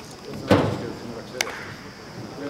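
A loud sharp thump about half a second in, then a shorter, sharper click about a second later, over background voices of people talking.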